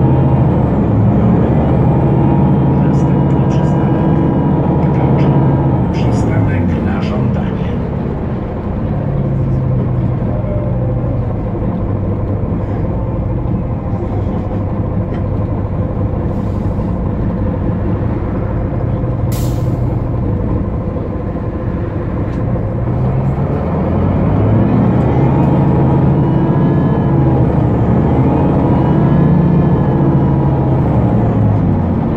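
A Solaris Urbino 12 city bus's DAF PR183 diesel engine and ZF six-speed automatic gearbox, heard from inside, pulling away and accelerating. The engine note drops at gear changes, most clearly about seven seconds in, then runs steady and climbs again near the end. The gearbox is said to be broken.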